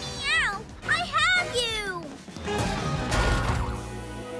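Cartoon characters' high, sliding wordless cries over background music, followed about two seconds in by a rushing whoosh that swells and fades.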